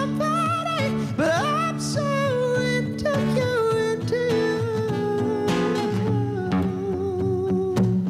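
Male voice singing a pop song live with sliding, held notes, accompanied by an acoustic guitar playing chords.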